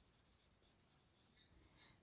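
Near silence, with the faint sound of a marker writing a word on a whiteboard.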